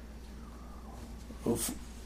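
A pause in a man's speech: quiet room tone with a steady low hum, broken about one and a half seconds in by a short vocal sound and breath as he begins to speak again.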